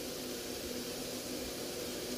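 Faint steady hiss with a low hum underneath: background noise of a voice recording, with no speech.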